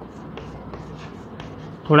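Chalk writing on a blackboard: a run of short, irregular taps and scrapes as symbols are chalked up. A man's voice starts right at the end.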